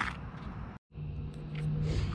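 Low background noise with a short click at the start. About a second in it breaks off into a moment of dead silence where the recording is cut, and a steady low hum follows.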